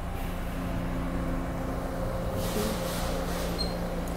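An older TTC subway train heard from inside the car: a steady low rumble with a constant hum.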